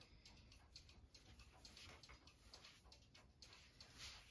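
Near silence, with faint irregular soft ticks and rustles of polyester fiberfill being pushed by hand into a knit sweater tube.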